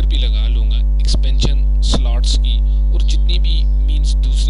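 Loud, steady mains hum in the recording: a 50 Hz electrical buzz with a ladder of overtones, typical of a microphone or sound card picking up electrical interference.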